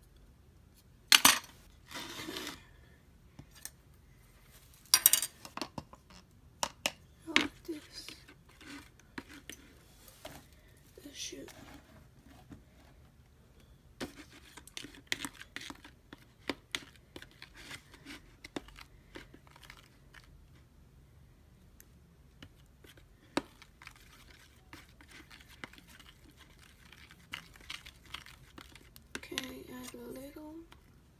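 Scattered sharp clicks and knocks with bursts of crinkling from slime-making supplies being handled, loudest about a second in and again near five seconds.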